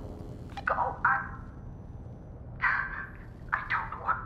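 A woman's short wordless vocal bursts: two just before a second in, then a quicker run of several in the last second and a half, over a low steady hum.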